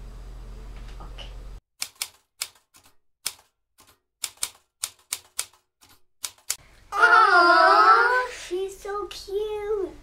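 Typewriter sound effect: an irregular run of sharp key clacks, about fifteen strokes over some five seconds, starting a couple of seconds in. From about seven seconds in, the loudest sound: a child's high, wavering voice.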